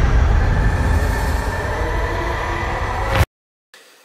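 Dark, cinematic intro soundtrack: a loud, low rumbling drone with a noisy haze and faint held tones. It cuts off abruptly about three seconds in.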